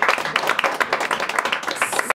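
Audience applauding: a steady, irregular run of hand claps.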